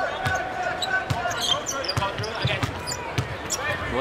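Basketball being dribbled on a hardwood arena court: a run of short bounces, over crowd noise and voices.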